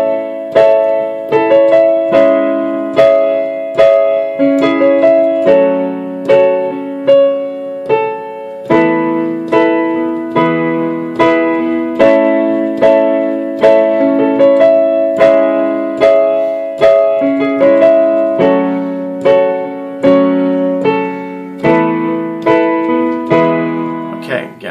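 Digital keyboard with a piano sound playing block chords through an A, C-sharp minor, F-sharp minor, E sus4 to E progression. Each chord is struck repeatedly in an even rhythm, about one and a half strikes a second, changing every few seconds.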